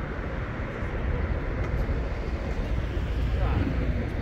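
City street ambience: a steady rumble of road traffic, with indistinct voices in the background.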